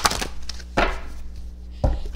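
A deck of tarot cards being shuffled by hand close to a microphone: three sharp riffling slaps about a second apart.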